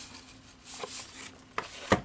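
Plastic blister packs of craft supplies being handled and set down on a table: soft rubbing and rustling, a couple of faint clicks, and a sharper knock just before the end.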